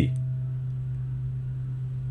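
Keyboard synthesizer playing plain, sine-like tones in harmonic-series tuning. Two higher notes die away right at the start, leaving one low note sounding steadily.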